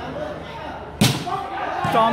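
A volleyball struck hard by hand: one sharp smack about a second in, with a short echo off the hall's roof. It is followed by a softer thud just before the end, over a steady murmur of spectators.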